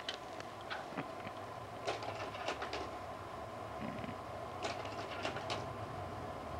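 An 8 mm film projector running: a steady mechanical whir with a faint steady tone and scattered small clicks.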